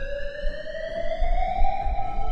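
A siren-like tone rising slowly in pitch, over a low rumble.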